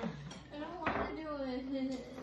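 A few short clinks of tableware on a glass dining table, with a woman's voice held in a drawn-out tone through the second half.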